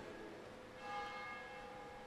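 Faint ringing of a bell, several steady pitches sounding together, swelling about a second in and then slowly dying away.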